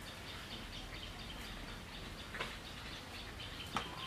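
Faint background of small birds chirping in a quick, steady run of high notes, with two brief sharp clicks, one about halfway through and one just before the end.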